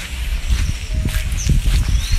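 Footsteps on a dirt path with rumbling handling noise from a handheld phone camera, and a few short knocks.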